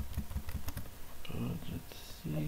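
Quick run of keystrokes on a computer keyboard through about the first second, followed by a brief vocal sound near the end.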